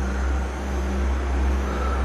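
A steady low rumble with a hiss above it, and a faint high tone near the end.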